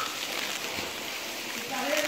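Steady rush of falling water from a small waterfall, with a man's voice starting again near the end.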